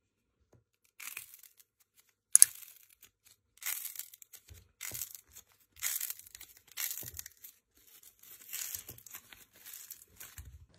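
Hands squeezing teal squishy balls with a thin, wrinkled outer skin. The skin crackles and crinkles in short bursts about once a second, with a sharp snap about two and a half seconds in.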